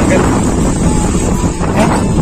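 Loud rumbling wind buffeting and rubbing on a phone's microphone while it is held against clothing, with voices partly heard under it.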